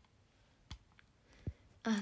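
Two light clicks about a second apart, then a young woman's voice starts near the end.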